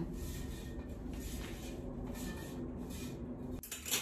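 Soft rustling and handling noises over a steady low hum of room noise, with one sharp clack near the end.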